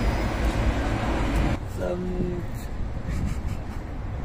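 Steady low rumbling noise in a moving Ferris wheel gondola, which drops off abruptly about one and a half seconds in and continues more quietly. A voice says 'mètres' just after the drop.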